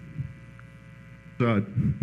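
Steady electrical mains hum, a set of constant tones, through a quiet pause. A man's voice comes in at a microphone about one and a half seconds in.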